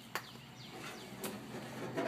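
Two faint metal clicks about a second apart as the hinged lid of a football-helmet barbecue grill is opened, with faint bird chirps in the background.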